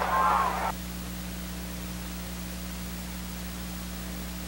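Steady hiss with a low electrical hum underneath, the noise floor of an old video recording. A louder sound in the first part of a second, the tail of the race caller's voice or the crowd, cuts off abruptly.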